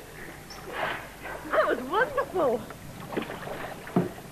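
A woman's excited wordless voice, quick rising and falling cries like laughter, about halfway through, over water splashing around a swimmer in a pool.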